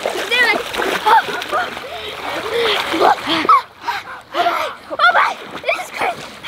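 Splashing as people wade and plunge into a cold creek, with repeated excited yells and whoops from children and an adult over the water.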